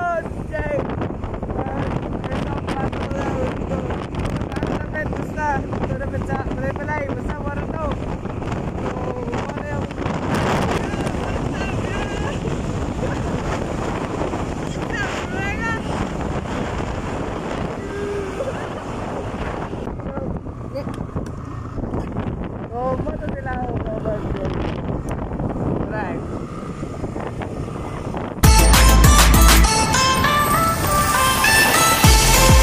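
Wind buffeting the microphone on a moving motorcycle, a steady rush, with voices calling out now and then. Loud music cuts in suddenly about a second and a half before the end.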